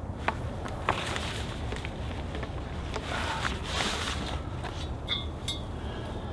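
Cot poles being handled and slid into a fabric carry bag: light knocks twice early on, then rustling and scraping, and a couple more clicks near the end.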